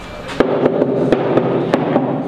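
Hammer blows on timber shuttering formwork, a quick series of about seven sharp strikes beginning about half a second in, with a hollow ring from the wooden box between them.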